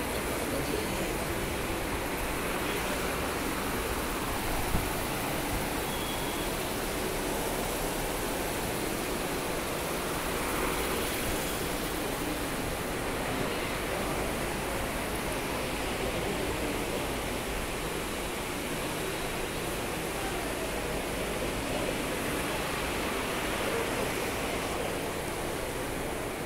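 A steady, even rushing noise with no distinct events, like the hum of a busy room.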